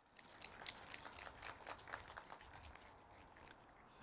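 Near silence, with faint scattered clicks and rustling.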